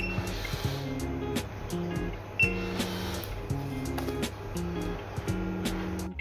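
Background music with a steady beat, over which the Be-Tech C2800M8 RFID locker lock's reader gives two short high beeps, one at the start and one about two and a half seconds in, as a key card is presented to test the lock.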